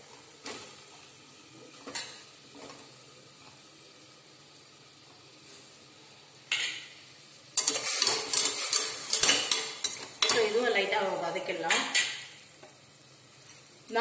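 A metal spoon scraping and clinking inside a steel pressure cooker as diced potato and tomato are stirred, possibly in melted butter. A few light knocks come first, then steady stirring over the second half.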